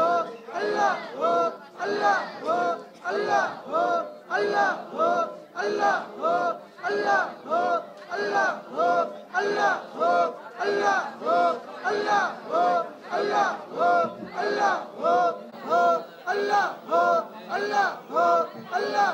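A large group of men chanting a short phrase in unison, over and over in a steady rhythm of about three calls every two seconds, each call rising and falling in pitch: a Sufi zikr chant.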